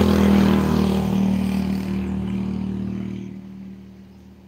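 Motorcycle engine passing close by, loudest at first and fading away over about three seconds as it rides off.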